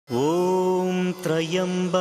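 A voice chanting in long held notes, like a devotional mantra sung as a title theme, with a brief break about a second in where it moves to a new syllable.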